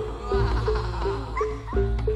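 Javanese gamelan music: a pitched gong-chime note struck about three times a second over a steady low drum and bass background, with short rising-and-falling high tones above it.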